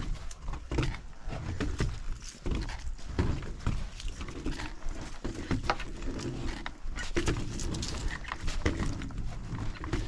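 Rollerski wheels rolling over the planks of a wooden boardwalk: a low rumble with many irregular clacks and knocks as the wheels cross the board joints.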